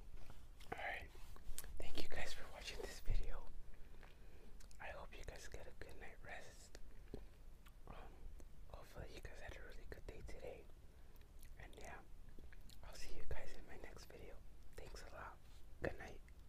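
A man whispering close to the microphone in short phrases with pauses between them.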